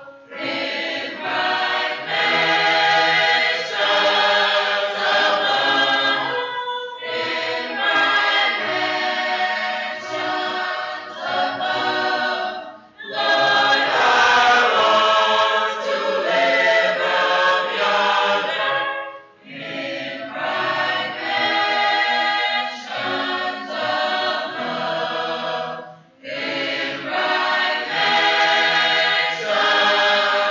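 Mixed choir of young men and women singing in phrases of about six seconds, with short breaks between them.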